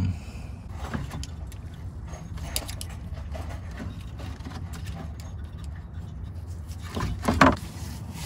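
Light clicks and scrapes of hands working under a car, unplugging two electrical connectors from an in-line fuel pump, over a steady low hum, with a louder clatter near the end.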